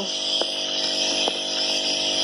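Electric knapsack sprayer's pump motor running with a steady hum, switched on while the spray mix in its tank is stirred; two light knocks come about half a second and just over a second in.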